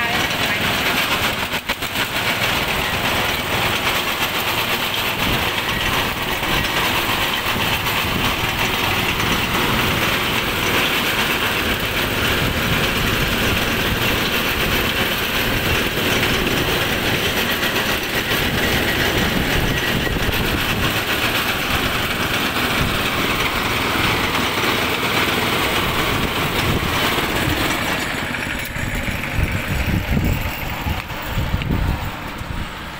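Small engine running steadily under load, driving the steel rollers of a sugarcane juice press as cane is fed through.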